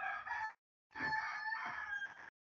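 A rooster crowing, heard through a video call's open microphone: a short first note, then a longer held one starting about a second in.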